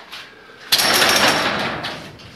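Garage door opener's emergency release being pulled: a sudden metallic rattle and clatter starting under a second in and dying away over about a second, with a thin high ring through it.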